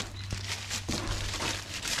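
Plastic wrapping crinkling and rustling irregularly as frozen milkfish in plastic bags are handled and lifted out of a cardboard box, over a steady low hum.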